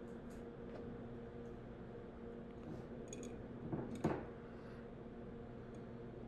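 Quiet room tone with a faint, steady low hum, broken once about four seconds in by a brief soft handling noise.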